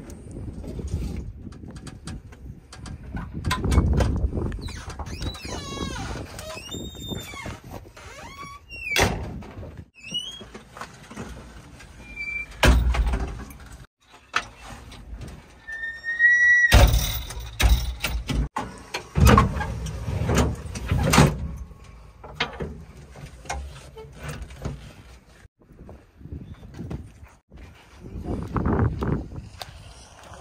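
Metal cab door and window of a JCB 3DX backhoe loader being opened and shut: scattered clanks and knocks, a few heavy thuds, and several short high squeaks of hinges and sliding frames.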